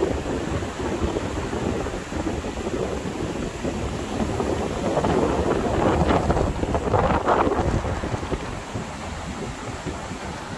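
Strong wind buffeting the microphone in uneven gusts, loudest about six to seven and a half seconds in.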